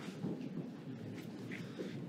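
Pen scratching on paper as a signature is written, faint short strokes over a low room murmur.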